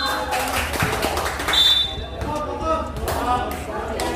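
Spectators talking and calling out around a basketball being bounced on a concrete court, with sharp thuds of the ball. A short high squeak about a second and a half in.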